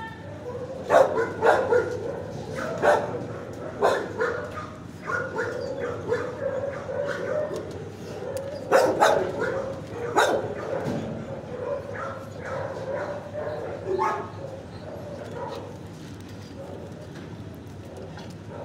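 Dogs barking in a shelter kennel, in irregular clusters, loudest about a second in and again around nine to ten seconds in, over a steady wavering whine; the barking thins out over the last few seconds.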